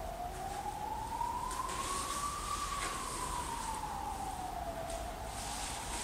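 A siren-like wailing tone: a single clean pitch that rises slowly for about two and a half seconds, then falls back down.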